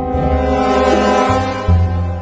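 A long, low horn blast like a ship's foghorn, swelling about a second in and fading out before the end, over background music with a plucked bass line.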